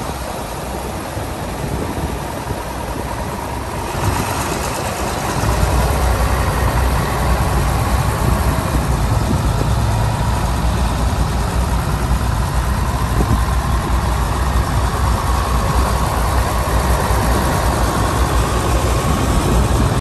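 John Deere 4230 tractor's six-cylinder diesel engine running as the tractor is driven. It grows louder a few seconds in as the tractor comes close, then holds steady.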